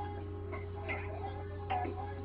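Steady low hum with a faint steady tone above it, and two faint brief sounds, one about a second in and one near the end.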